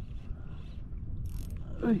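Ryobi Ultra Power 1000 spinning reel being cranked to retrieve a lure, a steady gear whirr over a low rumble. A brief hiss comes a little past halfway, and near the end a man's loud exclamation is the loudest sound.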